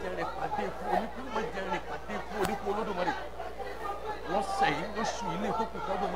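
People talking, more than one voice, over a low steady hum, with one sharp click about two and a half seconds in.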